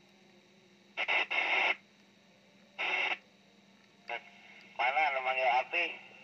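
Yaesu FT-1802 FM transceiver's speaker giving short bursts of hiss as the squelch opens on incoming signals, then a thin, band-limited voice coming in over the air near the end. The repaired receiver is working normally.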